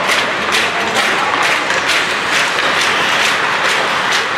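Rink sound of an ice hockey game in play: a steady wash of noise with sharp hits repeating about three times a second.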